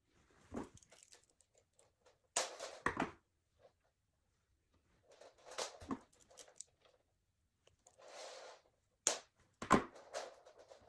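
Fret wire being cut from the coil with end nippers and handled on a bass neck: a handful of sharp snips and clicks spread through, with a soft rustle about eight seconds in.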